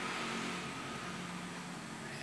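Steady low background hum with an even hiss.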